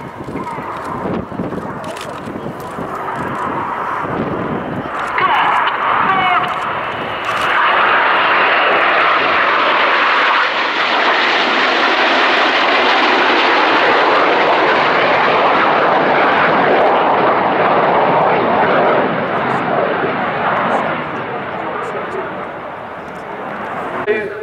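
A formation of BAE Hawk T1 jets flying past, the jet noise swelling to a loud, steady rush about eight seconds in, holding for some twelve seconds, then fading.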